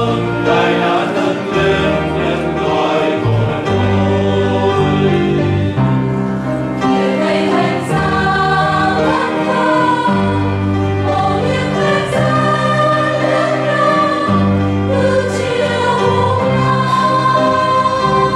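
Mixed choir of women and men singing a Vietnamese hymn in sustained phrases, accompanied by piano.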